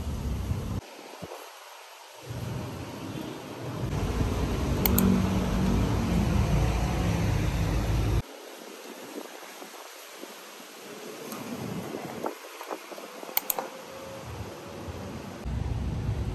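Outdoor ambience with a low rumble of wind on the microphone that cuts in and out abruptly, over a thin steady hiss, with a couple of faint high chirps.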